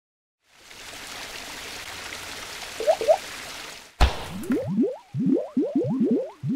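Animated logo intro sound effects: a steady hiss that swells in after a moment of silence, then a sharp hit about four seconds in, followed by a quick run of short rising bloops, about three a second.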